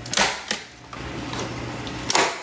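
Staple gun firing twice in quick succession, about a third of a second apart, driving staples through plastic netting into a wooden board.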